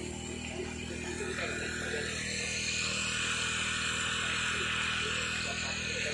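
Steady drone of a small engine running a fire pump, with the hiss of water spraying from a fire hose building from about a second and a half in.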